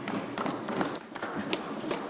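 Brief scattered applause from a few members in a debating chamber: an irregular patter of claps and taps.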